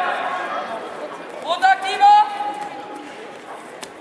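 Voices echoing in a sports hall: background chatter, then two short loud shouts about a second and a half in, the second held on one pitch. A single sharp knock comes near the end.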